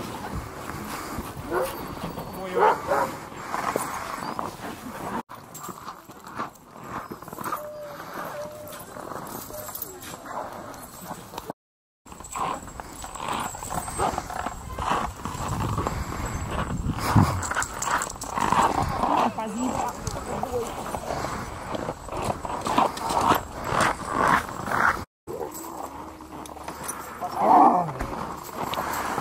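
A team of harnessed sled dogs barking and yelping together, with people talking in the background. The sound breaks off briefly a few times at cuts.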